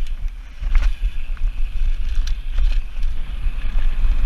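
Mountain bike descending a gravel trail at speed: heavy wind buffeting on the microphone over tyre noise on loose gravel, with a few sharp clatters from the bike rattling over bumps.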